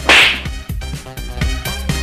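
A short, sudden swish of an editing sound effect right at the start, fading within about half a second, over background music with a steady beat.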